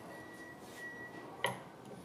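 Quiet room tone with a faint steady high tone that stops after about a second, then a single light metallic click about one and a half seconds in as a hand tool is handled during removal of a pump valve seat O-ring.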